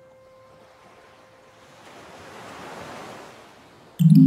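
A soft, surf-like wash of noise swells up and dies away over about two seconds in a gap in a lo-fi track, after a piano note fades out at the start.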